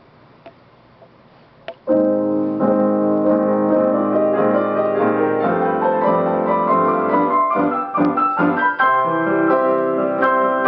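Grand piano played four-hands as a duet, starting about two seconds in with loud full chords and quick moving notes. A few faint clicks come just before the playing begins.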